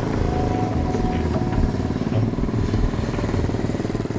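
Motorcycle engine running and revving as the rider pulls away, with a rapid low firing beat.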